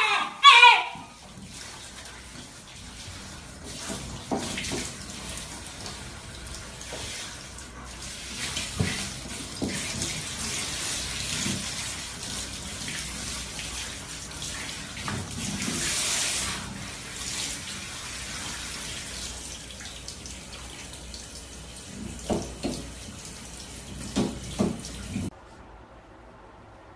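Water spraying steadily from a handheld shower head onto a Shiba Inu that bites at the stream, starting just after a short bark. A few short sounds break through near the end, and the spray cuts off suddenly just before the end.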